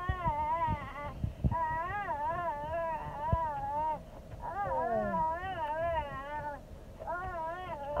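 A young child's high-pitched, playful vocalising: four long warbling calls with short breaks between them, the pitch wobbling up and down throughout.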